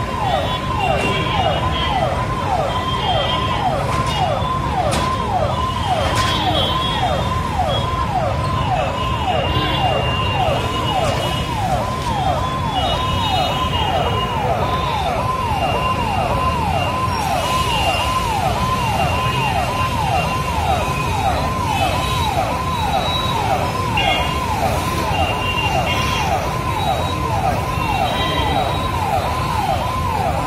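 A siren sounding in quick repeated falling sweeps, about two a second, at an unchanging level throughout, over a low background rumble.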